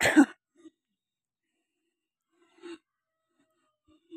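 A person coughing once, short and loud, right at the start; about two and a half seconds later there is a brief, faint vocal sound.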